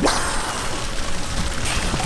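Water splashing and sloshing around a landing net as a swimmer works it at the lake surface, a steady noisy wash throughout.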